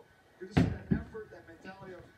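A tennis ball thrown at an over-the-door mini basketball hoop strikes it with a sharp knock about half a second in, then a second, softer knock. The shot misses the basket.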